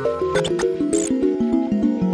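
Upbeat intro music: a quick run of short, stepping notes over a regular beat, with a brief high-pitched squeak-like effect about halfway through.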